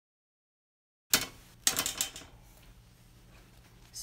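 Porcupine quills and a metal mesh strainer clinking against a metal bowl as the quills are tipped out. After a second of dead silence there is a sharp clink, then a quick run of small clicks, then faint room noise.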